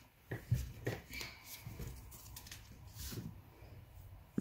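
Sheets of cardstock and paper panels being handled and set down on a tabletop: a few soft taps and light paper rustling.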